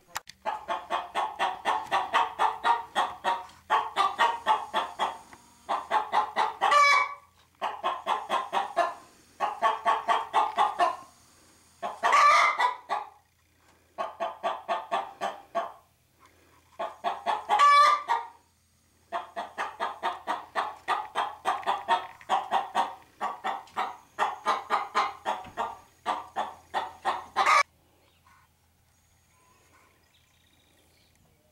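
Hen clucking in quick runs of about five or six clucks a second, several runs ending in a longer, higher squawk. The clucking stops shortly before the end.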